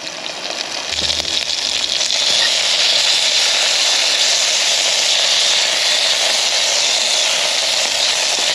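Pork sausage chunks sizzling in hot vegetable oil in a small camping pot on a gas stove, browning. A steady, hissing sizzle that grows louder over the first couple of seconds and then holds.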